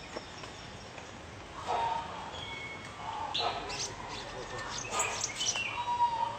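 Birds chirping in short high bursts, several times in clusters, with a few voices in the background.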